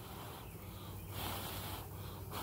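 A honeybee colony on open frames humming steadily and low, with a person breathing close to the microphone.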